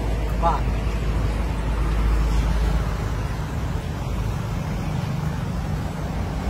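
Steady low rumble of road traffic, with no distinct passing vehicle or other event standing out.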